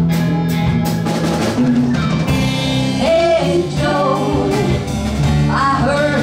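Live rock band playing a blues-rock song between sung lines: a drum kit with sharp cymbal strokes in the first second and a half, electric guitars and bass. Voices come in again from about halfway through.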